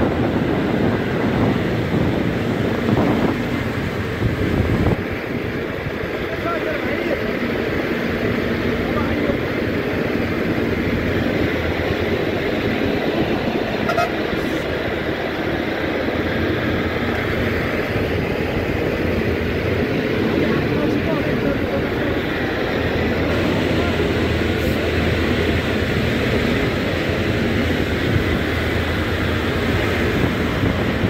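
Steady engine and road noise of a bus on the move, heard from inside the cabin, with passengers' voices in the background.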